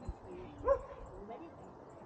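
A dog gives one short bark, about two-thirds of a second in, after a low thump at the start.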